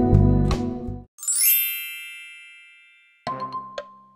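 Background music cuts off about a second in, and a bright chime sweeps upward and rings out, fading over about two seconds. Near the end a countdown-timer sound effect starts, one short tone with ticks each second.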